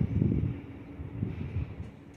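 Wind buffeting the microphone, a low rumble that is strongest at first and dies away over the two seconds.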